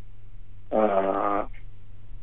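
A man's drawn-out hesitation sound, a flat 'aah' held for under a second about a third of the way in, heard over a telephone line with a steady low hum underneath.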